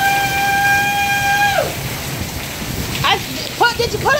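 Heavy wind-driven rain from a severe thunderstorm, a steady rushing noise. Over it, a person holds one long high-pitched call for about a second and a half at the start, and short vocal sounds come near the end.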